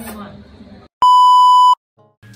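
A single loud, steady electronic beep lasting under a second, starting about a second in and cutting off abruptly. Before it, faint voice and room sound stop suddenly.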